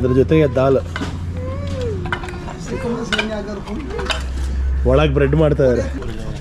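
Light clinks and scraping on a steel plate as bread is torn and dipped in sauce, amid bursts of people's voices and a low steady hum.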